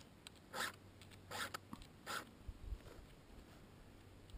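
Hand file drawn across the cutter teeth of a Stihl chainsaw chain: three faint rasping strokes about 0.8 s apart, the first about half a second in, with a few soft low knocks from handling the saw.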